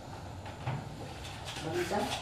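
Light knocks and handling noise of a baking dish being set into a countertop toaster oven, with a small knock about two-thirds of a second in.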